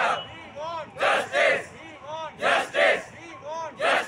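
Crowd of protesting doctors chanting a slogan in call and response: one voice calls out, and the group answers with two loud shouted beats. The cycle repeats three times, about every one and a half seconds.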